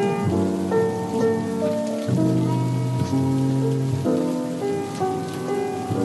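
Instrumental backing music of a slow jazz ballad between sung lines, with sustained chords changing about once a second, over a steady hiss of rain.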